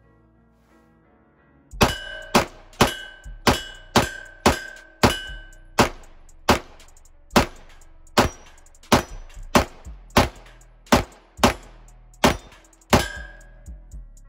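Shots from a PSA Dagger 9mm pistol, about eighteen in roughly eleven seconds starting about two seconds in. Several shots are followed by a ringing ding, typical of hits on steel targets. A music beat plays faintly underneath.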